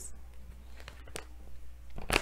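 Quiet room tone with a steady low hum and two or three faint clicks about a second in.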